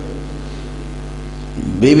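Steady electrical mains hum in the sound system during a pause in speech. A man's voice comes back in near the end.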